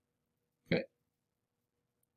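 A single short vocal sound from a man, about three-quarters of a second in; otherwise near silence.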